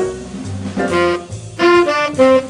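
Tenor saxophone playing a swing jazz solo line, with held notes coming in about a second in and again near the end, over a backing of low bass notes.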